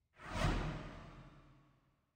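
A single whoosh sound effect for an animated graphics transition. It swells quickly a fraction of a second in, then fades away over about a second and a half.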